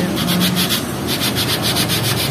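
A thin plate being rodded in and out of the tubes of a Ford Ranger radiator core, scraping in quick repeated strokes several times a second, to clear tubes clogged with dirt.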